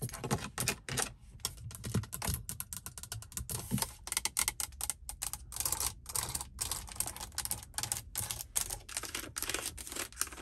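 Long acrylic fingernails tapping and scratching on a car's plastic dashboard trim and air-vent slats, a rapid, irregular run of sharp clicks and taps.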